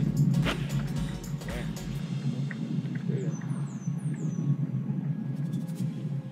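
A golf iron strikes the ball in a single sharp click about half a second in, on a full approach swing. Background music runs throughout, and a few high descending chirps follow a few seconds later.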